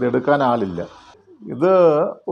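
Speech only: a man talking in Malayalam, ending on one long drawn-out vowel whose pitch bends up and down.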